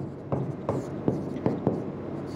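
Writing on a black board: the tip of the writing tool makes an irregular run of short taps and scratches as letters are formed stroke by stroke.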